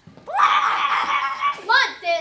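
A girl screaming, one long high scream lasting about a second, followed by two short shouted calls near the end.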